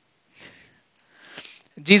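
Two short, faint sniffs through a man's nose about a second apart, taken in a pause in his talk; his speech starts again near the end.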